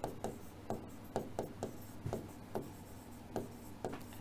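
A pen writing by hand on a white writing board: short, irregular taps and scratches of the pen strokes, several a second.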